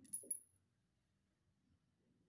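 Two quick, light metallic clinks close together at the very start, from the metal parts of a hammer drill's gear assembly knocking together as they are handled.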